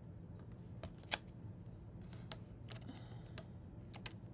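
Oracle cards being handled and shuffled in the hands: a few light clicks and snaps, the sharpest about a second in, over a faint steady low hum.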